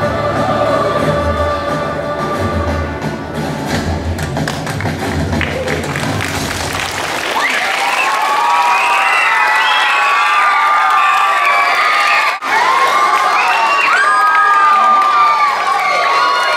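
A song with a bass accompaniment plays and ends about seven seconds in. An audience of children then breaks into cheering and shouting, which carries on to the end.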